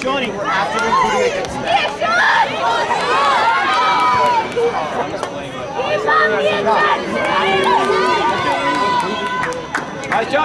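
Several voices of players and sideline spectators calling out and talking over one another during live play, with no clear words.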